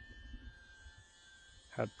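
Faint, steady high whine of a small electric RC plane's motor and propeller in flight, over a low rumble; a man's voice starts again near the end.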